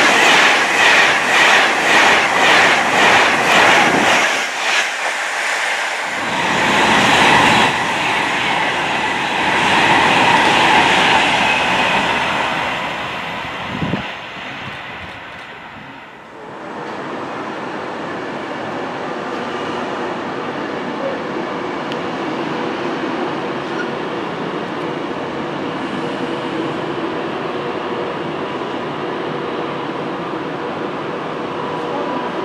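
Class 390 Pendolino electric train passing close by at speed: a fast, regular clatter of wheels over the rail for the first few seconds, then a rush of noise that swells and fades away. After a cut about sixteen seconds in, steady background noise.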